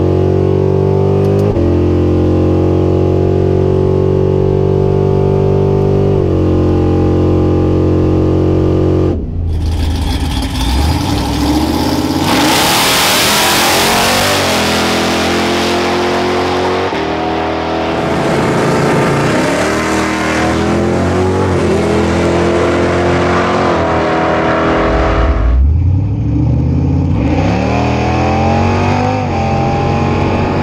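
Supercharged, cammed 5.7 Hemi V8 of a 2011 Ram 1500 R/T on a drag-strip run. The engine is held at steady high revs at first, then revs up and climbs through the gears in rising sweeps, with drops in pitch at the shifts. It is heard from several positions, with sudden changes in sound where the shots change.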